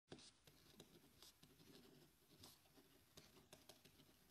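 Near silence: faint room tone broken by scattered soft clicks and rustles, about one or two a second, the strongest right at the start.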